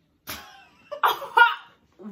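A girl coughing: one short cough, then two sharper, louder coughs about a second in.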